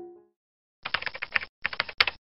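Computer keyboard typing: rapid clicks in two short bursts, each well under a second, with a brief pause between them. A piano tune fades out just before.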